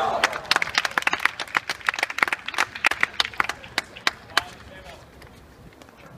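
Scattered applause from a small group of spectators, dense for about four seconds and then dying away. A short shout comes right at the start.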